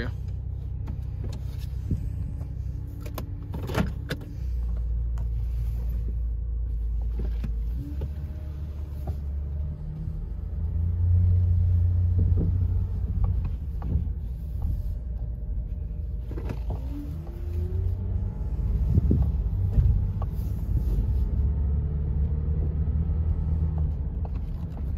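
2011 Chevrolet Traverse's 3.6-litre V6 heard from inside the cabin as the SUV pulls away and accelerates, its low hum stepping down in pitch several times as the automatic transmission upshifts normally. The motor runs without knocks or ticks. A few brief thumps come through, the loudest near the end.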